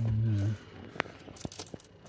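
A short spoken "yeah", then a few faint, sharp clicks and light scraping sounds, the clearest click about a second in.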